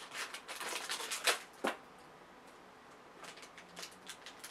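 Packaging of a Ghostbusters blind-box toy being torn open and handled: a run of crinkling, crackling rips in the first second and a half, then quieter rustling with a few faint clicks.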